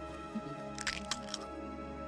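A large egg cracking open as it hatches: a quick run of about four sharp cracks about a second in, over film-score music with long held notes.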